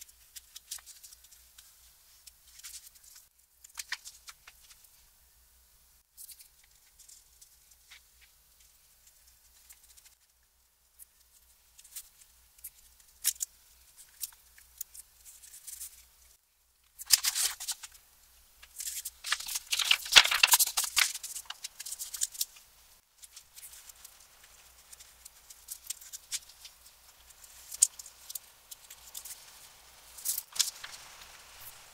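Hand work with paper and book cloth on a workbench: faint scratches and small taps from a paste brush and fingers on paper, with a louder few seconds of paper rustling a little past the middle.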